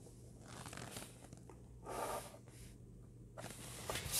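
Faint scraping and rustling of drafting work: plastic set squares slid across the drawing paper and a pencil drawn along their edges, in a few short spells, the clearest about two seconds in.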